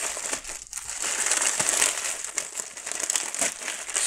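Thin plastic packaging crinkling as hands unwrap a clear plastic bag and a white poly mailer: a near-continuous run of irregular crackles, with a brief lull a little under a second in.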